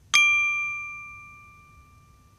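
A single bright metallic ding: a bell-like sound-effect strike that rings on in several clear tones and fades away over about two seconds.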